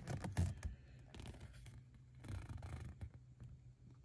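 Faint, intermittent rustling and scraping of a folded paper collector's leaflet being handled and turned, with a few small clicks.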